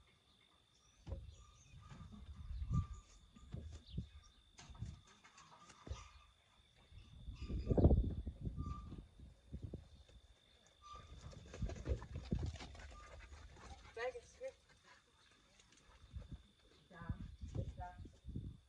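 Wind rumbling on the microphone in uneven gusts, loudest about eight seconds in, with a faint sheep bleat around fourteen seconds in.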